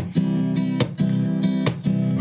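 Acoustic guitar strumming chords in a steady rhythm, the chords ringing on between hard strums that come about every 0.8 seconds.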